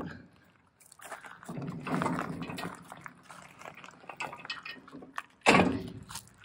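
Footsteps crunching on loose gravel, with a louder, sharper crunch about five and a half seconds in.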